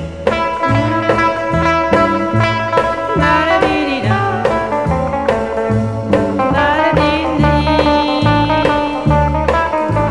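A 1958 skiffle record in a passage without lyrics: guitar playing over a steady bass beat.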